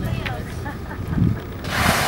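Blue whale's blow: a loud, airy burst of breath from the blowhole as it surfaces, coming near the end and lasting about half a second, over a low steady rumble.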